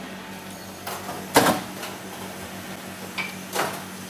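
The metal door of a Zanolli commercial oven being shut with a single bang about one and a half seconds in, over a steady low hum.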